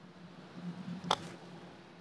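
A golf club striking a golf ball off an artificial-turf hitting mat for a short, high-lofted shot: one short, sharp click about a second in.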